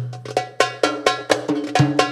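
Darbuka (Arabic tabla) drum solo: after a brief stop, a hard opening stroke and then quick, ringing strokes about four a second, with a low note sustaining beneath them.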